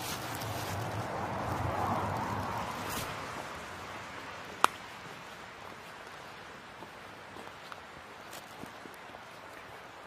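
Footsteps squelching along a wet, leaf-covered woodland path. A hiss swells and fades over the first few seconds, and a single sharp click comes just under halfway through.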